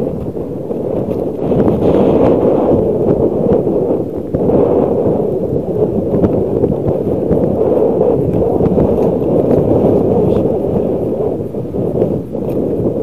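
Bicycle tyres rolling over rough, snow-crusted sea ice, a loud steady rumbling noise, with wind on the action camera's microphone.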